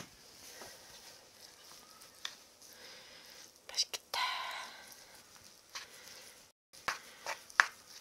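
Wooden spoon stirring namul bibimbap in a wooden bowl: soft scraping with a few light wood-on-wood knocks scattered through, and a brief murmur of voice about four seconds in.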